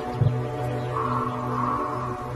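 Sustained background score of held low tones with a soft swell in the middle, and one brief low thump about a quarter second in.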